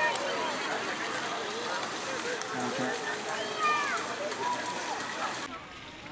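Overlapping chatter of many distant voices, with a few higher-pitched calls standing out about halfway through. The sound drops suddenly to a quieter level shortly before the end.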